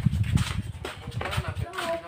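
Irregular low thumps and rumble of footsteps and handling noise on a handheld camera as the person carrying it walks, dying away near the end, where a voice is briefly heard.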